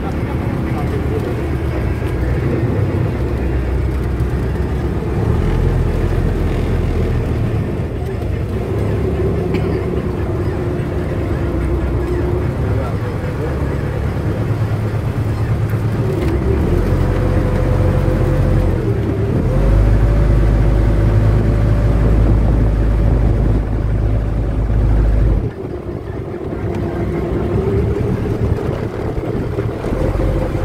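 Small wooden boat's engine running steadily, its pitch rising a little past halfway and holding higher for several seconds, then dropping suddenly a few seconds before the end.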